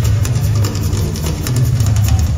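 Live heavy metal band playing loudly, driven by pounding drums and a heavy low end, recorded from the audience.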